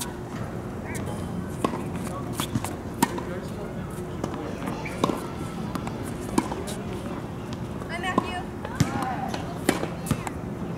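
Tennis balls being struck by rackets and bouncing on a hard court: sharp pops every second or two during a rally, with faint voices in the background near the end.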